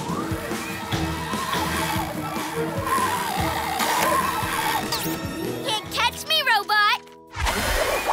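Cartoon soundtrack: background music with a laugh at the start, then a quick run of warbling, rising-and-falling sounds about six seconds in.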